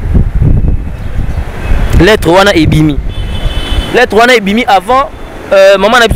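People talking, with a low rumble under the first two seconds and a couple of short spoken phrases after it.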